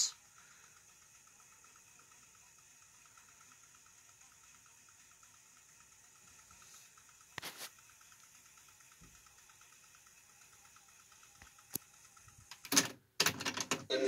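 Pioneer CT-W770 cassette deck fast-forwarding a tape: a faint, steady whir from the transport with a fine rapid flutter. A soft knock comes about halfway through, and a few clicks and a louder knock come near the end.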